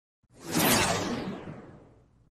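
A whoosh sound effect for a logo intro: a rush of hiss that swells in about a third of a second in, then fades over about a second and a half, its brightness sinking in pitch as it dies away.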